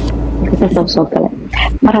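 A person speaking over a steady low hum, the talking starting about half a second in.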